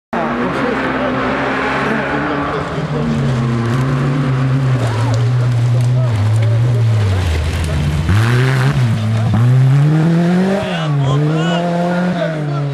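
Rally car engine running hard as the car approaches on a forest stage. Near the end the revs rise and fall several times in quick succession as the car goes past close by and drives away.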